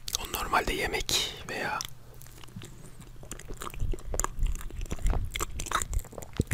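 Close-miked chewing of a soft layered biscuit cake: wet mouth sounds with many small clicks, thickest in the second half.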